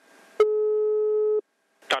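Telephone ringing tone heard down the line as an outgoing call rings at the other end: a single steady beep about a second long, over faint line hiss.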